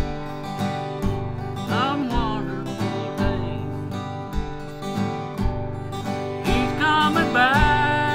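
Yamaha acoustic guitar strummed in a steady country-gospel rhythm, with a man's singing voice over it briefly about two seconds in and again near the end.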